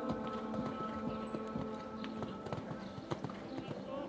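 A horse's hoofbeats, a string of dull thuds, under background music with held chords.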